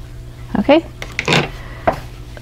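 A woman's voice making a few short sounds without clear words, over a steady low hum.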